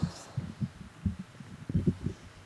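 A string of soft, low, dull thuds at uneven intervals, several of them bunched together and loudest near the end.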